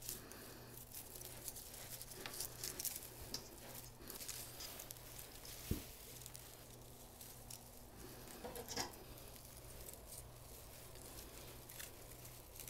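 Faint, intermittent rustling and crinkling of evergreen sprigs and stiff holly leaves as they are handled and woven into a wreath, with one sharp click a little before six seconds in.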